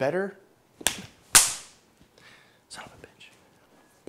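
A short click, then about half a second later a loud sharp crack that fades out over about half a second.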